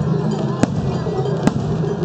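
Aerial fireworks bursting: two sharp bangs about a second apart, over steady festival music and crowd voices.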